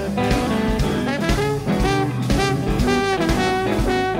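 Trombone soloing with a live blues band behind it, drums keeping a steady beat.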